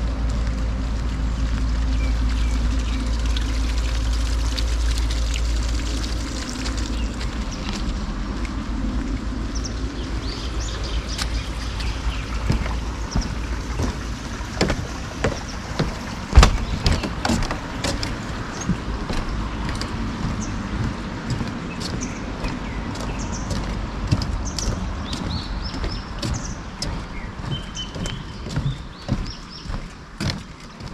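Footsteps knocking on a wooden boardwalk, about two steps a second from roughly ten seconds in, with small birds chirping. A steady low rumble fills the first six seconds.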